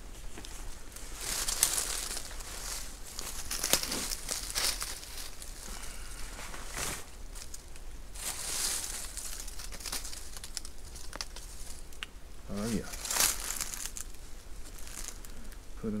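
Fabric game bag rustling and crinkling as it is handled and shot squirrels are put into it, in several irregular bursts, with dry leaves rustling underfoot.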